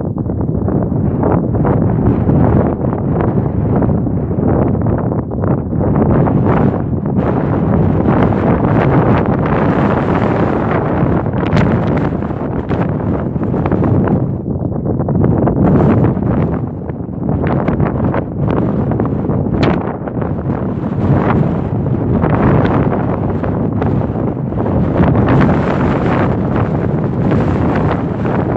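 Strong wind buffeting the microphone, loud and gusting, rising and falling every few seconds.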